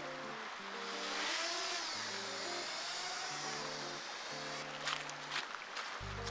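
Background music of slow, held notes, over the high whirring whine of a camera drone's propellers that swells about a second in and fades after about four and a half seconds.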